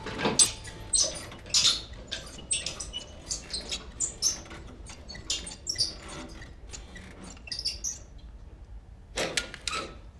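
Manual hospital bed being adjusted by its hand crank, its metal mechanism giving a run of short, irregular squeaks and clicks, with a louder pair near the end.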